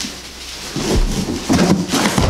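Cardboard boxes being handled and pulled open, rustling, with rolls of heavy aluminium foil set down on the floor in dull thumps, the loudest about a second in and again from halfway on.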